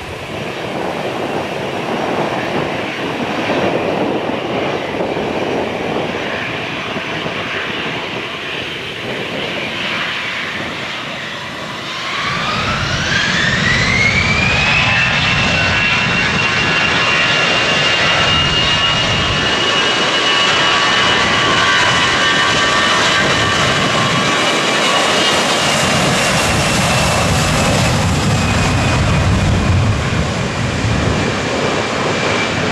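Twin jet engines of an Airbus A320-family airliner running at low power, then spooling up for takeoff about twelve seconds in: a whine rises in pitch over about three seconds and then holds high and steady under a deep rumble as the jet rolls down the runway.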